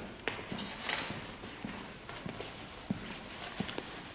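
Footsteps on a hard floor, a series of uneven knocks at about walking pace, with a short rustle about a second in.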